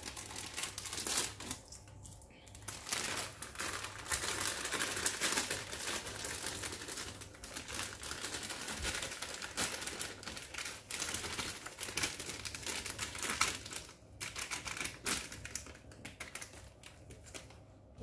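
Wire-mesh kitchen sieve being shaken and tapped over a glass bowl as powdered cake mix is sifted: a rapid, continuous rattle of light ticks, breaking off briefly about two seconds in and again near the end.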